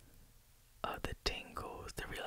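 A man whispering close to the microphone. It starts about a second in after a short near-silent pause, with a few sharp clicks as it begins.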